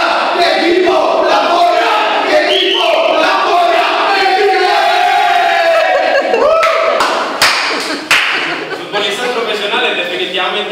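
Group of men chanting and shouting together in a team huddle, building to one long drawn-out cry that rises at its end, followed by a few sharp smacks as the huddle breaks up.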